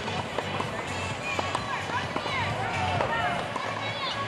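Background music mixed with overlapping voices of several people talking and calling out, none of it close or clear.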